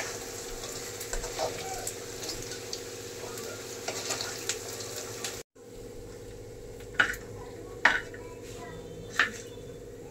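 Chaap pieces deep-frying in a kadai of hot oil, sizzling and crackling as a slotted spoon stirs them. After a cut about halfway, a quieter sizzle of onions and cashews frying, with three sharp clinks of metal against the pan.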